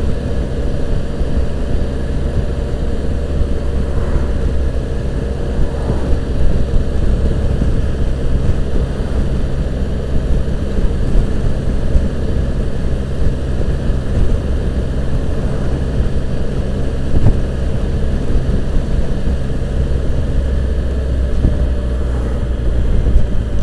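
Wind noise rumbling on the microphone over the steady running of a 2015 Can-Am Spyder RT's three-cylinder engine as the trike cruises at a constant speed.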